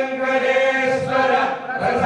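Male temple priests chanting mantras in long, held notes, with short breaks for breath about a second in and near the end.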